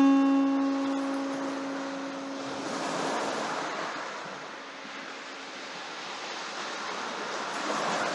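Surf washing in over a pebble beach, swelling about three seconds in and again near the end. A held guitar chord from background music rings out and fades over the first two seconds.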